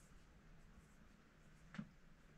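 Near silence: room tone in a small room, with one faint short click near the end.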